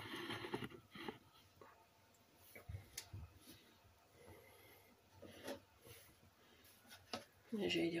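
A quiet stretch with a brief rustle in the first second and a few faint clicks, then a voice begins just before the end.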